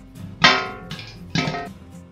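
Background music: plucked guitar, with two struck chords that ring out and fade.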